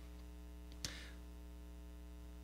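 Steady electrical mains hum with a single short click just under a second in.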